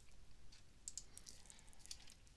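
A few faint, scattered clicks of a computer mouse and keyboard as a spreadsheet context menu is opened and rows are pasted in; otherwise near silence.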